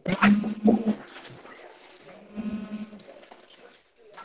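Sheep bleating twice, with a wavering pitched call near the start and a second shorter one about two seconds later.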